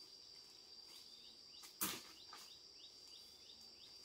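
Forest insects droning: one steady high-pitched tone with short rising chirps repeating several times a second. About two seconds in, a single sharp crack stands out above it.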